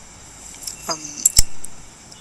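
A person's hesitant 'um', then a few short, sharp clicks, the loudest just after the 'um'.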